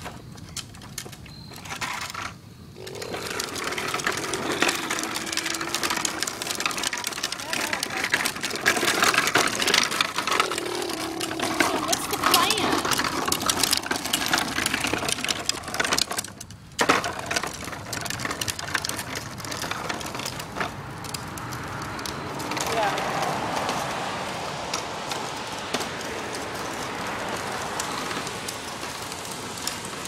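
Hard plastic wheels of a toddler's push-along ride-on trike rolling and rattling over concrete and asphalt, a dense clattering that starts a couple of seconds in and breaks off briefly about halfway through.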